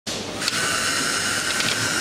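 Small handheld electric screwdriver starting about half a second in and then running steadily with a high whine as it turns a screw in the back of an LED display module.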